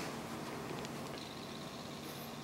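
Faint steady whir of a running desktop PC's case fans.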